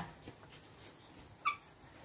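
A single short, high-pitched animal call about one and a half seconds in, over a quiet background.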